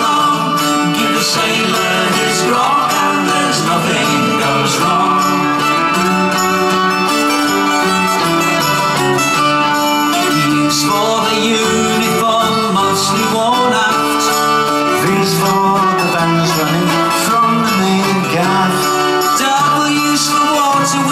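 Folk-rock band playing live, with acoustic guitar and mandolin over drums, steady and loud.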